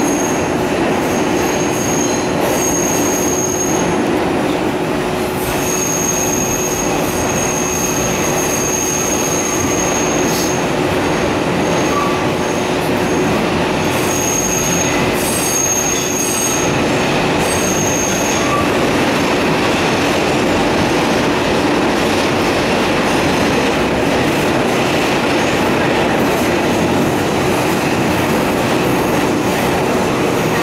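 Bombardier R142 subway car running through a tight curve, heard from inside the car: a steady rumble of wheels on rail, with high-pitched wheel squeal that comes and goes over the first eighteen seconds or so and then stops.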